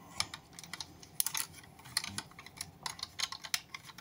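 Hard plastic parts of a Baiwei TW-1103 Jetfire figure clicking and tapping together in quick, irregular clicks as the axe accessory is worked onto the tabs under the jet.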